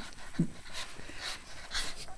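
Small dog panting close to the microphone, about two quick breaths a second, with one brief low vocal sound about half a second in.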